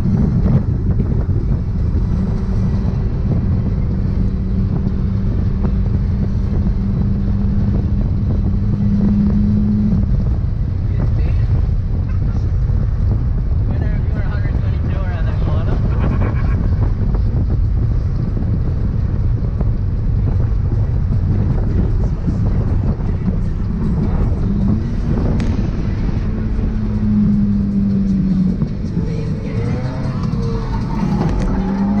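Mazda NA MX-5's four-cylinder engine driven hard, heard from inside the cabin over heavy road and wind rumble. The engine note holds and climbs gently, drops away about ten seconds in, then rises again and falls off near the end.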